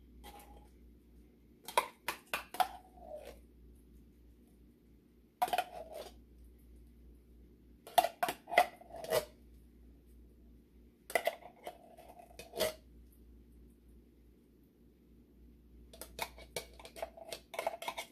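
Metal spoon scraping and clinking inside a tin can as canned pumpkin purée is dug out into a bowl. It comes in five short bursts of knocks and scrapes a few seconds apart, with quiet in between.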